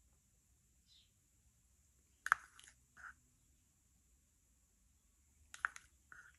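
Faint clicks and taps of a jar of cell activator and its dropper being handled, once about two seconds in and again near the end, with little else between.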